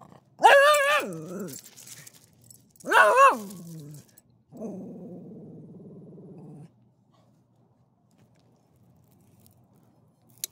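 Small long-haired dog vocalising in a grouchy mood: two loud, high, wavering cries of about a second each, both falling in pitch as they end, then a low steady growl for about two seconds.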